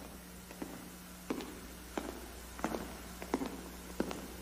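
Hard-soled shoes tapping across a stage floor: slow, evenly paced footsteps, about one step every two-thirds of a second, each a short tap.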